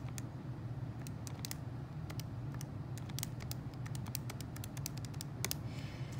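Keys being pressed on a TI-84 Plus graphing calculator: quick, irregular runs of small plastic clicks, over a steady low hum.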